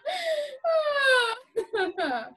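Women's voices in deliberate laughter-yoga laughing: a breathy burst, then a long drawn-out 'oh' that falls steadily in pitch, then short choppy laughing bursts near the end.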